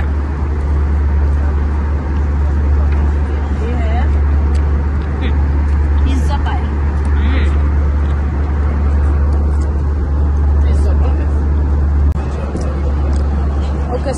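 Airliner cabin noise in flight: a loud, steady low drone of the jet engines and rushing air.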